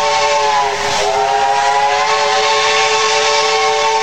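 Steam locomotive whistle blowing one long sustained blast over a hiss of steam. Its tones dip and break briefly about a second in, then hold steady.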